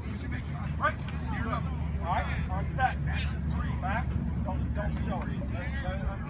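Distant voices of players and coaches calling out during football drills, over a steady low rumble.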